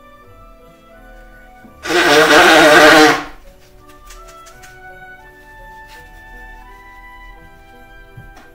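One loud human sneeze, about a second and a half long, from an itchy nose, over soft instrumental background music.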